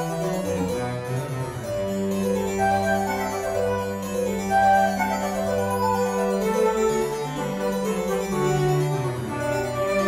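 Baroque chamber music for flute, cello and harpsichord in a fast movement in G major. The cello holds a long low G for most of the passage while the flute and harpsichord play moving lines above it.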